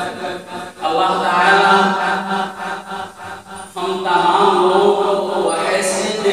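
A man's voice chanting a melodic religious recitation, holding long notes, with short breaks a little under a second in and again around three to four seconds in.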